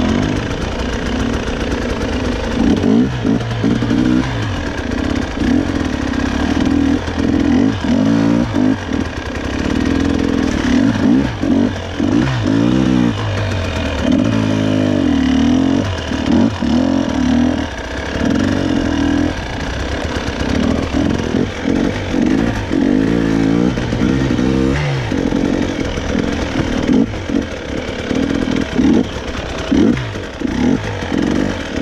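GasGas EC 300 two-stroke enduro motorcycle ridden at low speed, its engine pitch rising and falling over and over with short bursts of throttle.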